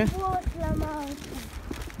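A woman talking, her voice trailing off about a second and a half in, over a steady low rumble.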